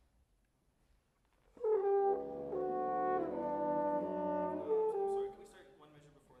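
Wind ensemble playing a short passage of sustained chords, with horns and other brass prominent. It comes in about a second and a half in, moves through a few chord changes and stops near the end.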